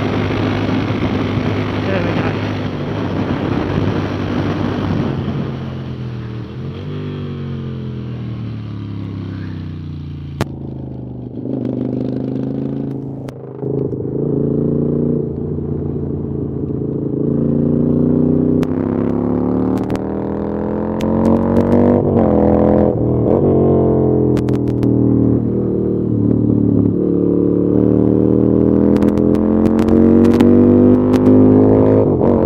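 Moto Guzzi V7's air-cooled transverse V-twin at track pace, its note rising under acceleration and falling off again, several times over. For the first ten seconds wind noise largely covers it. After a click the sound turns muffled, as from a phone in the rider's pocket, and the engine comes through clearly.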